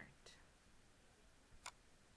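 Near silence with a single sharp computer mouse click about three-quarters of the way through.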